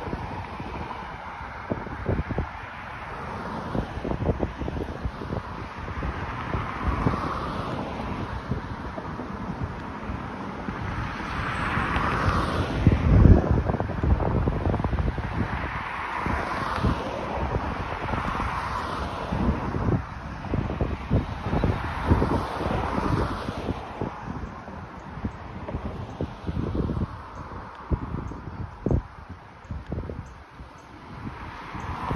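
Wind buffeting the microphone over the traffic of a multi-lane city street, with several cars passing one after another, their tyre noise swelling and fading. The loudest burst comes about halfway through.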